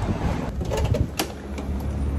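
City street background noise: a low, steady rumble of traffic, with a few sharp clicks about a second in.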